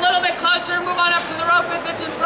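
A man's raised voice calling out in short phrases: speech only.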